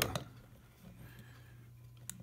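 A man's voice trails off in the first moment, then quiet room tone with a faint steady low hum.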